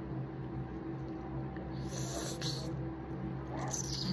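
A lime wedge squeezed by hand, giving two soft wet hisses, one about two seconds in and one near the end, over a steady low hum.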